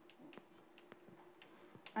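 Chalk writing on a blackboard: faint, irregular clicks and taps as letters are written.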